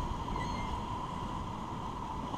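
Whitewater rapids of the Beas River rushing steadily around an inflatable raft.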